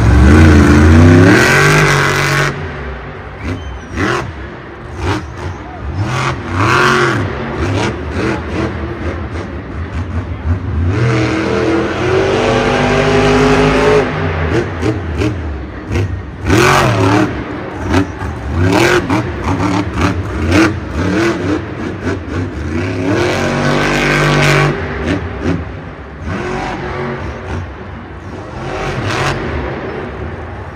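Grave Digger monster truck's supercharged V8 revving hard and dropping back again and again as it jumps, lands and wheelies.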